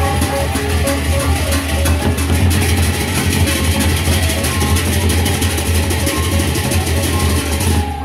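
A Sasak gendang beleq gamelan from Lombok playing at full tilt: large double-headed gendang beleq drums beaten in a fast pattern under a dense, continuous clash of many paired hand cymbals. A reed puput carries a melody of short held notes over the percussion, clearest in the first couple of seconds.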